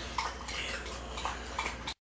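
A lull: a steady low electrical hum with a few faint small clicks and rustles, cut off abruptly to silence just before the end.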